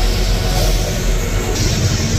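Loud simulated storm effects over a ride's sound system: a deep, steady rumble with a rushing, wind-like hiss above it, the hiss getting brighter about one and a half seconds in.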